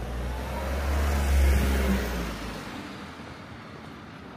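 A minivan drives past close by. Its engine and tyre noise swell to a peak about a second and a half in, then fade as it moves off down the street.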